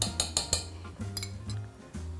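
Metal spoon clinking lightly against the metal pot while tapping spice in: a quick run of clinks in the first half second, then a couple more later, over background music.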